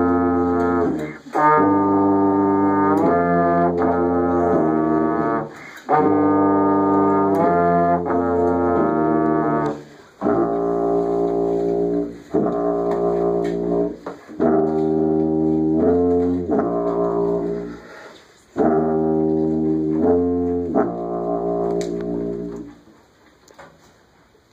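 A student brass trio of tuba, euphonium and trombone playing a slow tune in short phrases with brief breaks between them. About ten seconds in the euphonium and trombone drop out and the tuba plays the closing phrases alone, ending shortly before the end.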